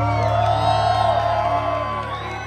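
A live rock band's final chord ringing out as a steady low drone, with audience members whooping and cheering over it.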